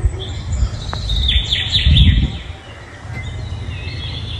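Small birds chirping, with a quick run of about four descending chirps about a second and a half in, over a steady low rumble.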